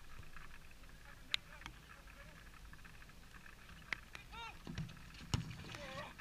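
A football being kicked during play on an artificial pitch: sharp thuds about a second in, near four seconds and, loudest, just after five seconds as a shot comes in on goal. Players shout between the kicks.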